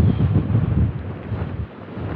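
Wind buffeting the microphone in uneven gusts, a low rumble that rises and falls.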